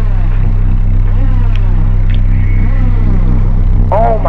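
A loud, steady low hum with faint sweeping tones over it.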